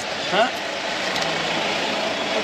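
Auto-rickshaw engine idling with a steady low hum.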